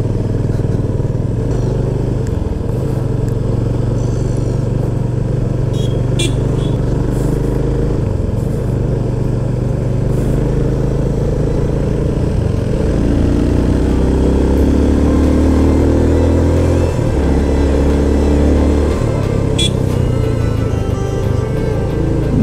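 Motorcycle engine running under way, heard from the rider's seat, its note shifting as the throttle and gears change. About halfway through, the engine climbs steadily in pitch for a few seconds, then drops back.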